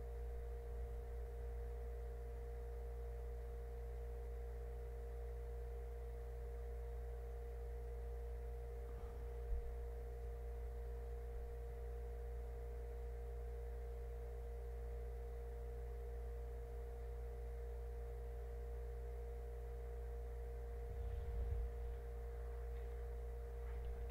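Steady electrical hum with a faint low rumble underneath, and a single small tap about nine and a half seconds in.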